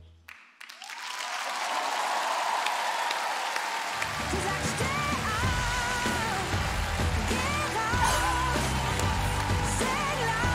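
Studio audience applauding and cheering as the song ends, building up within the first second. About four seconds in, music comes in under the applause.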